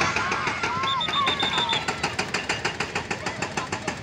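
A machine knocking steadily and rapidly, about nine even beats a second, with children's voices calling over it.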